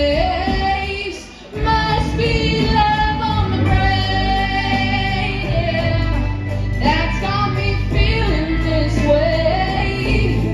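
A young woman singing a slow song into a handheld microphone over a backing track, with long held notes. Voice and music dip briefly about a second in, then the singing resumes.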